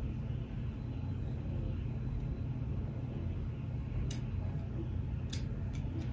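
Steady low rumble of background noise, with a few faint clicks in the second half.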